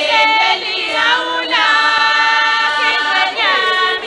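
Swazi maidens singing a traditional Umhlanga song unaccompanied as a large chorus, holding long notes that slide downward between phrases.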